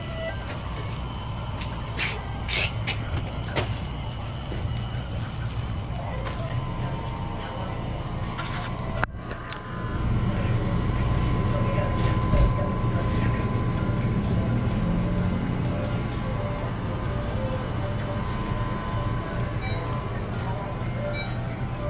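Small grocery store ambience: the steady hum of refrigerated open display cases, with background voices and a few clicks and knocks. About ten seconds in, the low hum grows louder.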